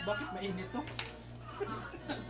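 Voices in the room over a steady low hum, with one sharp clink of crockery about halfway through.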